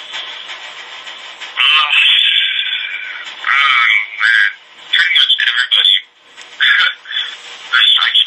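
A man's voice speaking in a thin, garbled way with no low end, the words too muddled to make out.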